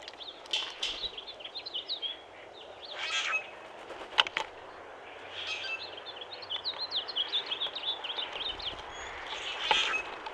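Backyard birds calling: rapid runs of short, high chirping notes, broken by a couple of harsher squeaky bursts. There is one sharp click about four seconds in.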